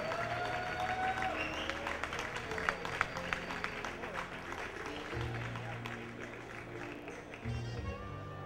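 Audience applauding and cheering over background music, the clapping thinning out after about five seconds.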